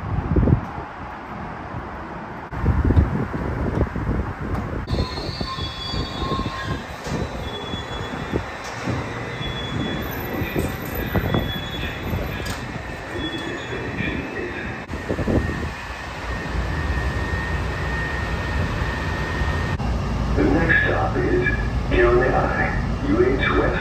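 Honolulu Skyline driverless metro train heard at an elevated station and then moving off, with a steady low running rumble. A voice, likely an onboard announcement, starts near the end.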